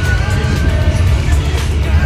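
Steady low rumble of a passenger train carriage in motion, heard from inside the car, with background music over it.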